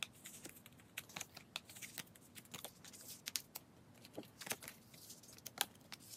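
Photocards being handled and slid into the plastic pockets of binder pages: faint, irregular clicks and rustles of card against plastic.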